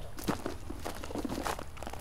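Footsteps crunching on a gravel driveway as a person walks across it.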